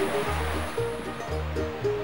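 Background music: a low bass note repeating about once a second under sustained higher notes, with a soft even wash.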